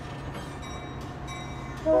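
Metra bilevel commuter train running by the platform with a steady low rumble and light clicks. A train horn sounds loudly near the end.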